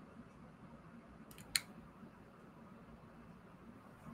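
Faint room tone with one sharp computer click about a second and a half in.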